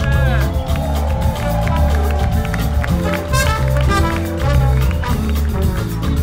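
Live jazz-funk band playing loud, with a steady electric bass line and drums under electric guitar and a horn section of saxophone, trumpet and trombone. Bending notes come in near the start.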